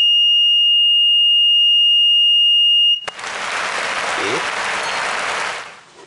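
Buzzer of a homemade continuity tester sounding one steady high-pitched beep through a 1 kΩ resistor, which shows it still detects continuity at that resistance even though its lamp stays dark; the beep cuts off suddenly about three seconds in. A rushing noise follows for nearly three seconds.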